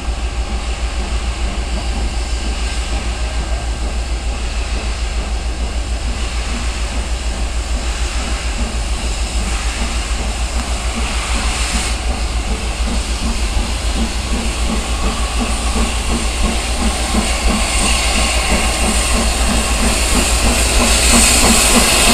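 GWR Castle class 4-6-0 steam locomotive No. 5043 drawing closer at low speed: a steady low rumble with a hiss of steam that grows louder toward the end.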